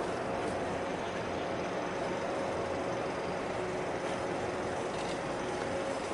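Steady drone of a 400-metre container ship passing close by: an even rush of noise with a few faint steady tones from its machinery.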